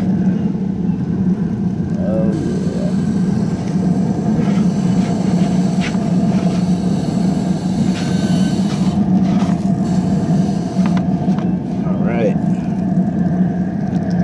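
A Green Mountain Grills Davy Crockett pellet grill running with a steady low hum, with a few brief scrapes and knocks as a wooden pizza peel slides under the pizza on the pizza stone.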